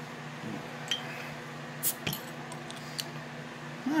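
Metal crown cap being pried off a glass soda bottle: a few small metallic clicks and clinks, the sharpest about two seconds in as the cap comes free.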